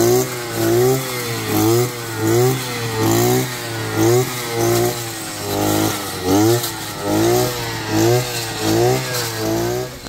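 Petrol brush cutter with a string trimmer head cutting dense brush, its engine running steadily and revving up and falling back in repeated pulses, a little more than one a second.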